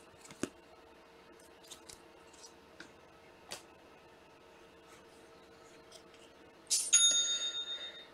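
Faint, scattered clicks and rustles of trading cards being handled in plastic sleeves and top loaders. Near the end comes a short bell-like ding with several bright ringing tones, the loudest sound here.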